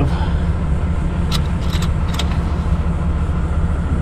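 A steady, low engine rumble, like an engine idling, runs throughout. A few light clicks come about a second in and again around two seconds in.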